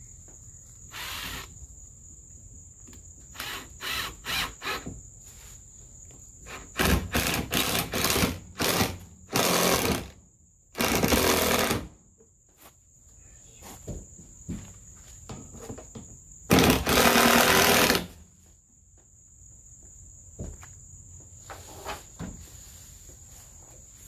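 Ryobi cordless driver run in stops and starts while driving screws into wood. It gives short pulses at first, then a cluster of quick bursts and three longer runs of about a second each. A steady high insect trill goes on underneath throughout.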